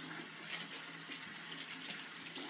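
Warm tap water running steadily into a sink as disinfected implements are rinsed under it, washing off the Barbicide disinfectant.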